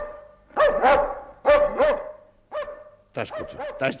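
A dog barking repeatedly in short, sharp barks, mostly in quick pairs.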